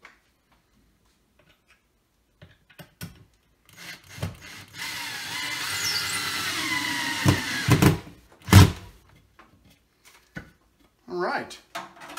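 Cordless drill running for about three seconds as it bores the second mounting hole through the shelf into the wall, its motor pitch sagging slightly under load. It is followed by a few sharp thumps, the loudest about eight and a half seconds in.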